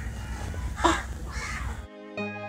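A bird calling twice, about half a second apart, over a steady low background rumble; music cuts in right at the end.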